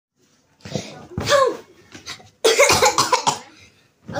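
A girl coughing repeatedly in several bursts, the longest run in the second half.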